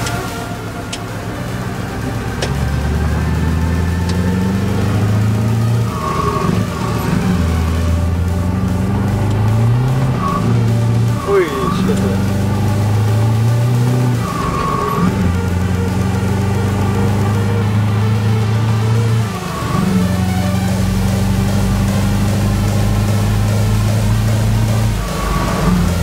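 Scania 4-series 580 V8 truck engine heard from inside the cab, pulling up through the gears. Its note rises, drops at each upshift, and holds steady from about twenty seconds in.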